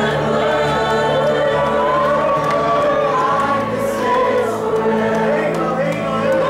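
Mixed youth choir singing a worship song in Spanish and English, a woman leading on a handheld microphone, with long held notes over steady low notes underneath.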